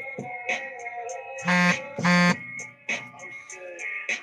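Background music with a steady ticking beat, cut across by two short, loud buzzes in quick succession about halfway through.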